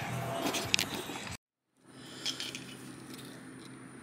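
Rustling handling noise with a couple of sharp light clicks, cut off suddenly about a second and a half in; after a brief dead silence, faint steady room noise with an occasional tick.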